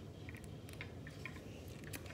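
Faint handling noise: a few small clicks and rustles over a low steady room hum.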